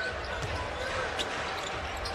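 A basketball being dribbled on a hardwood court, a few sharp bounces over steady arena crowd noise.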